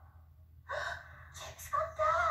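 Gasps from people watching a circus act, heard through a TV speaker: one sudden gasp about two-thirds of a second in, and a second one near the end that runs into a voiced 'ooh', over a low steady hum.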